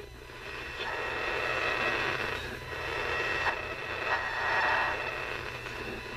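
Static hiss with a steady buzzing hum and a thin high whine from a GE 7-4545C clock radio's speaker as it is tuned across the AM band between stations. The interference is probably caused by a nearby fluorescent light.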